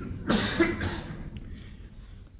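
A man coughs once, a short burst about a third of a second in.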